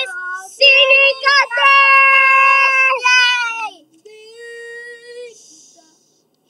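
A young girl singing on her own with no accompaniment, holding long notes: a loud sustained note through the middle, then a softer held note near the end.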